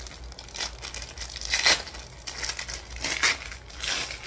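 Paper towel being crumpled and worked in the hands, in several short crinkling bursts, the loudest a little under halfway through.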